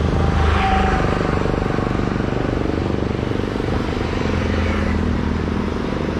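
Single-cylinder engine of a TVS Apache 160 motorcycle running steadily, its firing pulses even throughout.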